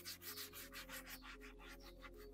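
Microfibre towel rubbing quickly back and forth over a leather door-panel armrest, wiping it clean: a faint, even run of several swishing strokes a second.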